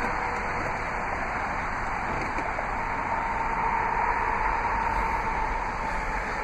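2002 Land Rover Freelander's 2.5-litre V6 running, a steady engine and road hum with a faint tone that strengthens and rises a little midway.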